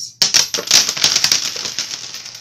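Handling noise from a phone held close to its microphone: a rapid, dense run of clicks and rustles that starts a moment in and carries on through.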